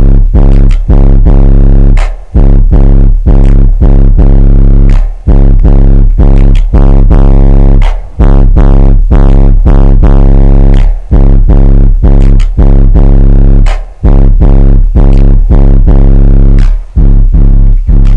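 Bass-heavy music played very loud through American Bass XD 8-inch subwoofers in a ported box, driven to full excursion. Deep bass notes pulse on and off with short gaps and overload the microphone into a distorted buzz.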